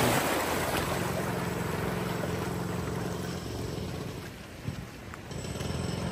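Shallow surf washing in over rocks at high tide, with wind on the microphone. The wash is loudest at first and grows quieter over the following seconds.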